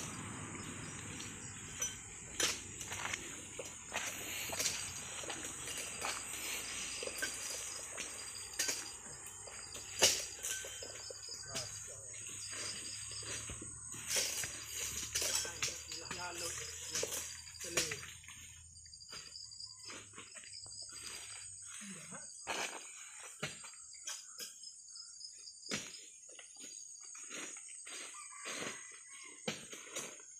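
Steady high-pitched insect chorus of crickets or cicadas, with scattered sharp knocks and clicks throughout.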